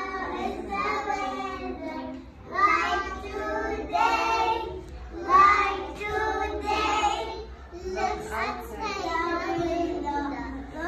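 A group of young children singing together, phrase after phrase with short breaks between.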